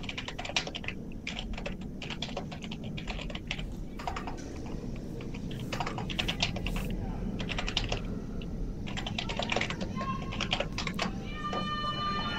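Computer keyboard typing: quick runs of key clicks in bursts. Near the end comes a long, held, high-pitched call.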